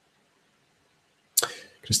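Near silence for over a second, then a single short, sharp click with a brief tail, just before a man's voice starts.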